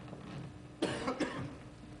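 A man coughing into a podium microphone over the public-address system: a sudden harsh cough a little under a second in, quickly followed by a second shorter one.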